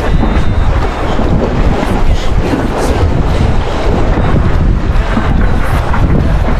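Wind buffeting the microphone on a boat at sea: a steady, loud, deep rush of noise.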